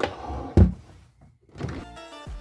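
Handling noise from a stuffed fleece pet bed being moved about on a table, with one dull thump about half a second in.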